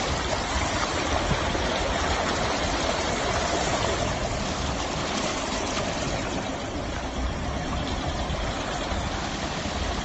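Muddy floodwater rushing and churning, a steady noisy rush with a low rumble underneath.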